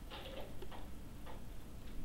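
Three or four faint clicks and taps, roughly half a second apart, from handling a laptop on a table.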